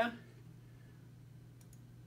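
A few quick, faint computer mouse clicks close together about one and a half seconds in, as a web link is opened, over a low steady hum.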